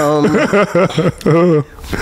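A person laughing in several short voiced bursts, with a longer one about halfway through.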